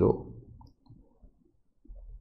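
Faint clicks and soft taps of a stylus writing on a tablet, after a spoken word trails off at the start.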